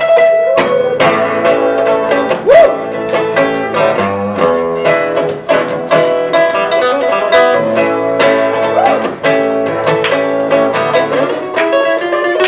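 Steel-string acoustic guitar played solo in a blues style: a busy run of fingerpicked notes and chords, with a few notes bent in pitch.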